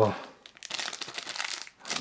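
Plastic packaging crinkling as it is handled, a crackly rustle lasting about a second.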